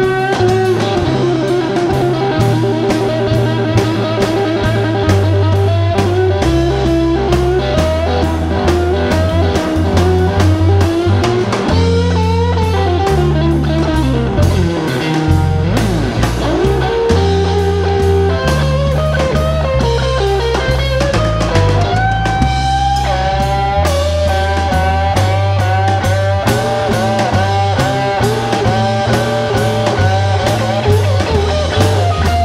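Live blues band playing a slow blues instrumental break: an electric guitar lead with bent notes over a walking bass line and drum kit.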